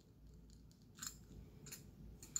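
Near silence, with faint handling sounds of a small craft bucket and a light click about a second in.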